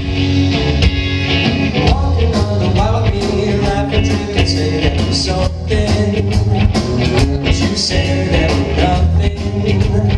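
Live rock band playing an instrumental passage: electric guitars, bass guitar and a drum kit at full volume, with a harmonica played into the vocal mic.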